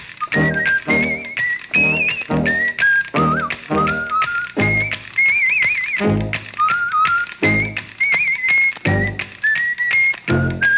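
Music with a steady beat: a low note about twice a second under a high, whistle-like melody whose notes step about and waver in places.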